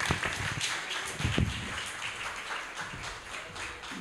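Audience applauding: a dense, even patter of many hands clapping, with a low thump about a second and a half in.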